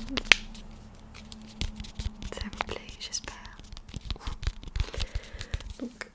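A plastic cosmetic sachet of under-eye patches handled and crinkled close to the microphone: scattered sharp crackles and clicks, with one loud crack about a third of a second in.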